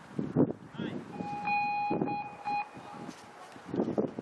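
An electronic beep tone held for about a second and a half, broken twice by short gaps, over the dull hoofbeats of a cantering horse on grass.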